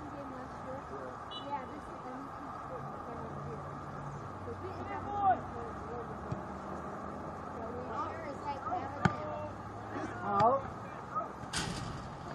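Distant calls and shouts from players and spectators around a soccer field, over a steady low hum. There is one sharp knock about nine seconds in and a short rush of noise near the end.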